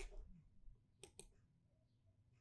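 Three faint, sharp clicks of computer input, one at the start and a quick pair about a second in, made while lines of code are selected and run.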